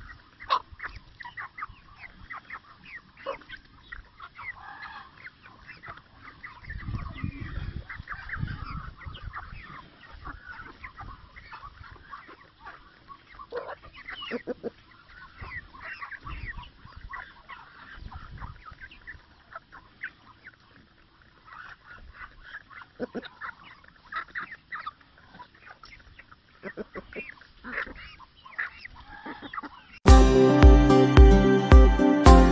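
Small flock of Rhode Island Red chickens clucking as they feed, with many short, sharp sounds scattered through. A low rumble joins in for about two seconds, around seven seconds in.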